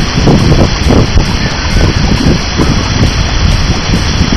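Steady rushing water of a small artificial waterfall pouring into a pool, with wind gusting against the microphone.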